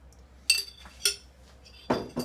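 Metal spoon clinking twice against a glass jar of sauce, each strike ringing briefly, then a louder, duller knock near the end as something is set down.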